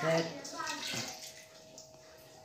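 Milk pouring from a plastic jug into a pot of part-cooked rice, a steady splashing pour.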